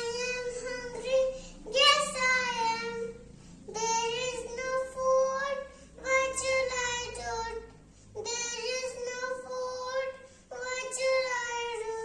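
A young child singing solo in a high voice: about six short held phrases of a second or two each, with brief pauses between them.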